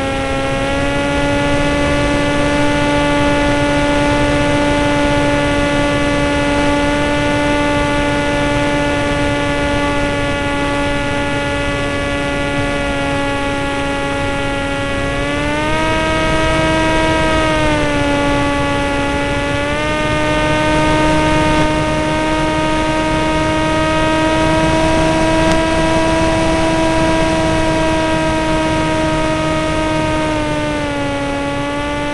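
Motor and propeller of a radio-controlled model airplane heard from a camera on board: a loud, steady buzzing tone that steps up in pitch about halfway through, drops back a couple of seconds later, then rises again and holds, following the throttle.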